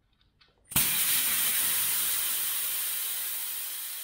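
Air hissing out of a high-pressure road bike tyre through its held-open valve as the tyre is deflated. The hiss starts suddenly about a second in and slowly weakens as the pressure drops.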